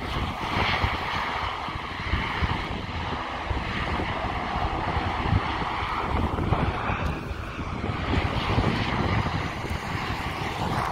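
ATR 72 twin-turboprop engines and propellers running steadily as the aircraft taxies, heard from a distance over a low rumble.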